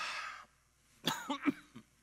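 A man coughing: a few short, sharp coughs in quick succession about a second in.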